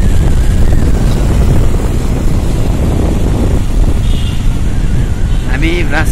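Wind buffeting a phone microphone on a moving motorbike, over the bike's running engine and tyre noise: a loud, steady, deep rumble with no distinct events.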